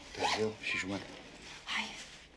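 Clothing zipper pulled in a few short rasping strokes, with a brief bit of voice partway through.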